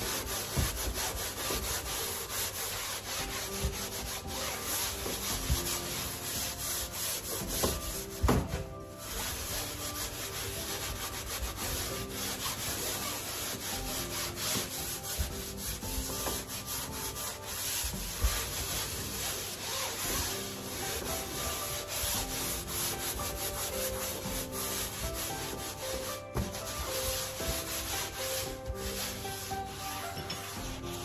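Sponge scrubbing a metal gas stovetop coated in foamy cleaning paste: continuous fast back-and-forth rubbing, with a couple of brief knocks.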